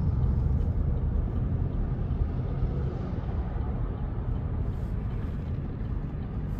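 Passing city road traffic, a bus and cars: a steady low rumble that eases a little toward the end.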